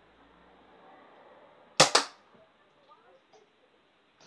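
Nerf Triad EX-3 spring-powered dart blaster firing: two sharp snaps a fraction of a second apart, about two seconds in.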